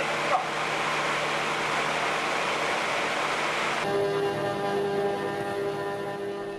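Steady rushing noise of sea water and a fishing boat's machinery, with a low engine hum, as a purse-seine net is hauled in. About four seconds in this cuts off and gives way to background music of sustained string chords.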